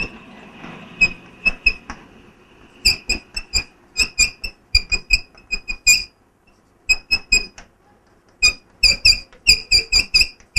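Chalk writing on a blackboard: quick runs of short, squeaky taps and strokes, with two brief pauses after the middle.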